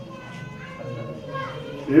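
Background murmur of small children's voices and adult talk in a room, with a louder voice starting near the end.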